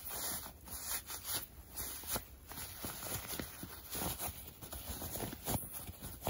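Cloth face mask rustling and rubbing as hands turn it right side out, in irregular rustles with light knocks.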